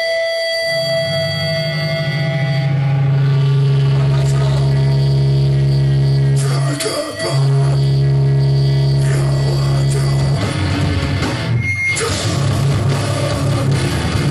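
Hardcore punk band playing live: distorted electric guitars and bass hold a long ringing chord, cut off briefly about seven seconds in and taken up again, then break into a choppier riff near the end.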